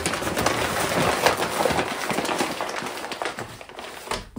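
Close-up rustling and crinkling of a bag being handled: a dense run of small crackles that eases off toward the end.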